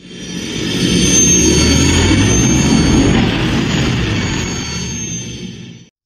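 Intro sound effect: a loud engine-like rumble with a steady high whine over it, building up over the first second and fading away just before the end.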